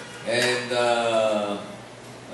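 A man's voice amplified through a microphone: after a short hiss, one drawn-out, chant-like phrase held for about a second, falling slightly in pitch.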